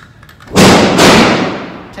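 Two gunshots about half a second apart, each followed by a long echo from the walls of an indoor range.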